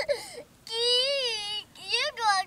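A young girl's voice: a short sound, then one long, high-pitched squeal of about a second that rises and then falls.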